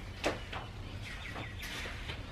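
A single sharp click about a quarter second in, then low room noise with a few faint bird chirps.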